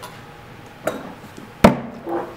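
A plastic orange juice jug set down hard on a stone countertop, giving one sharp knock near the end, with a fainter click about a second earlier.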